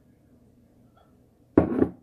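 Quiet room tone with a faint low hum, then near the end two short, loud scuffs about half a second apart as a glass bowl of melted butter is reached for and handled on the counter.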